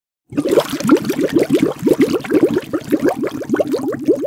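Bubbling sound effect: a rapid run of short rising bloops, several a second.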